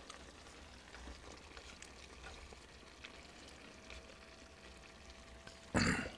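Sukiyaki simmering faintly in a cast iron skillet just turned down to low heat, a soft sizzle with small pops. A brief louder noise comes right at the end.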